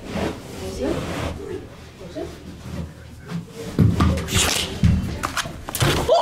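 Low voices talking, then from about four seconds in a run of heavy thumps and rustling, as of people scrambling about and the camera being jostled.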